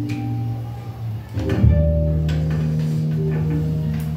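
Background music with guitar: held notes over a steady low bass line, with a new bass note coming in about a second and a half in.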